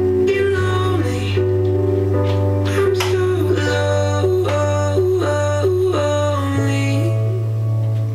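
Pop song playing from an FM radio broadcast through a loudspeaker: a sung or played melody over a steady bass.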